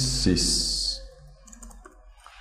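A man speaks a word with strong 's' sounds ("sys") in the first second, then a few light computer-keyboard keystrokes click in the quieter second half as code is typed.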